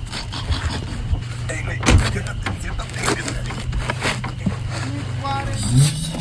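A steady low drone with scattered knocks and clicks, the sharpest about two seconds in, and a short rising tone near the end.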